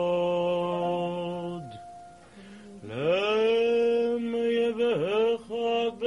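A male cantor singing a cantorial chant without clear words, holding long notes. After a brief quieter dip he swoops up about three seconds in into another long held note.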